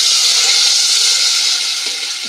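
Frying pan of hot oil and garlic sizzling loudly as tomatoes go into it; the sizzle eases slightly near the end.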